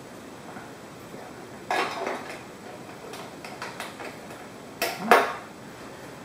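A few sharp metallic knocks and clinks from a crescent wrench being handled against the metal rails and hardware of a screen-stretching frame. There are two louder double knocks, about two seconds and five seconds in, with lighter ticks between.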